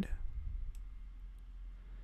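A few faint computer mouse clicks in the first second, over a low steady hum.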